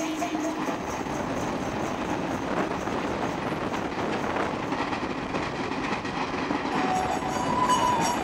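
Train running, a steady rumble and rattle of wheels on track heard from inside a carriage.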